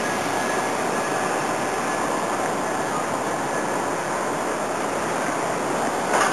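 Steady rushing outdoor background noise at an even level, with no distinct events.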